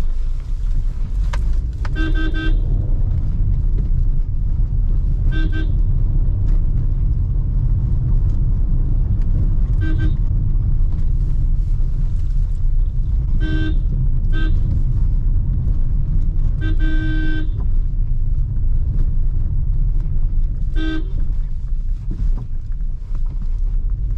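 Maruti Suzuki Ciaz horn, heard from inside the cabin, tooted seven times a few seconds apart. Most honks are short taps; two run a little longer. A steady low drone of the car driving slowly runs under them.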